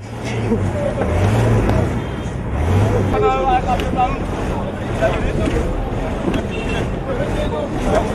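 Busy outdoor location sound: crowd chatter and scattered voices over a steady low rumble of vehicles.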